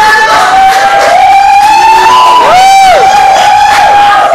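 A few people cheering and howling loudly at once in long, held calls that waver and swoop, one rising and dropping sharply about three seconds in.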